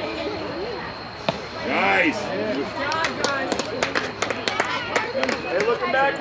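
Voices around a youth baseball field, with one shout about two seconds in. A single sharp knock comes just after a second in, and a run of irregular sharp clicks or knocks follows in the second half.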